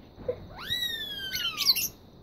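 Rose-ringed parakeet calling: one long, very high call that shoots up and then slowly slides down in pitch, followed by a few short, harsh notes.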